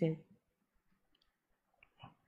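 A spoken phrase trails off at the start, then near silence broken by a few faint clicks.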